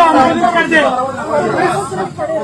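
Speech only: several men talking over one another in a heated argument.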